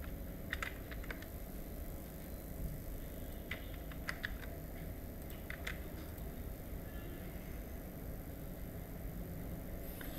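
A few scattered computer keyboard and mouse clicks, in small clusters during the first six seconds, over a faint steady low hum.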